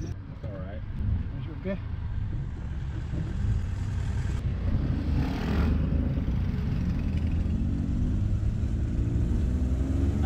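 Engine and road noise of a moving jeepney heard from inside the passenger cabin, a steady low rumble that grows a little louder partway through. About five seconds in, a motorcycle tricycle passing alongside adds a brief rise of higher noise.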